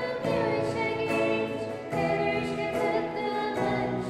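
A church music group singing a hymn, several voices together over strummed acoustic guitar and electric guitar, with long held notes and the chord changing every couple of seconds.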